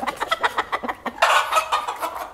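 Chickens clucking in quick, overlapping calls, with one louder call a little over a second in.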